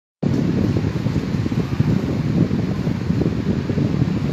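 Steady, loud, low rumble of moving air on the recording microphone, without a clear pitch or rhythm.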